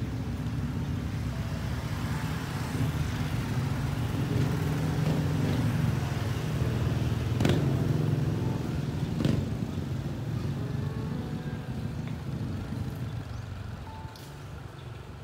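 Motorcycle engine running in the street, a steady low rumble that swells toward the middle and eases off, with two sharp knocks about two seconds apart midway.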